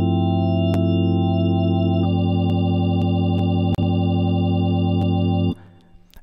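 Casio Privia Pro PX-5S digital piano playing its GospelOrgan1 tonewheel-organ preset: a held organ chord that moves to a new chord about two seconds in and cuts off sharply about half a second before the end.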